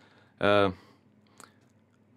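A man's voice in a short pause of speech: one brief voiced hesitation sound about half a second in, then quiet room tone broken by a single faint click.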